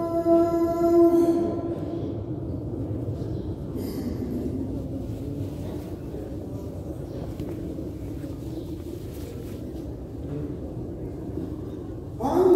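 A muezzin's held note of the dawn call to prayer dies away about a second and a half in. What follows is the low, steady murmur of a large crowd echoing in a vast prayer hall, in the pause between two phrases of the adhan.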